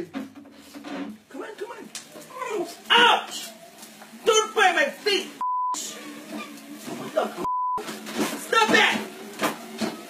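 Two short censor bleeps, about two seconds apart. Each is a single steady tone standing in for a word that has been cut out of the audio, among excited shouts.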